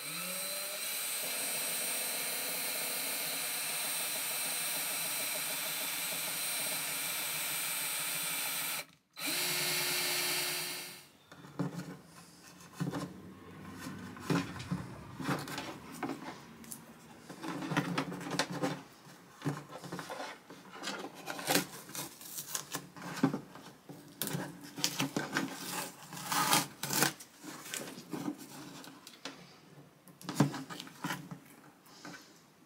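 Black+Decker cordless drill boring through the wooden top of a hollow archtop guitar body. It runs steadily for about nine seconds, stops for a moment, then runs again briefly and winds down. After that come light clicks and rustles of a wire being fished through the new hole.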